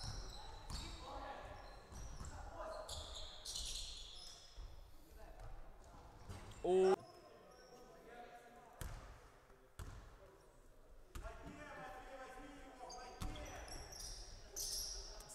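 Basketball bouncing on a wooden gym floor during play, with players' voices in a large, echoing hall. One brief loud shout stands out about seven seconds in.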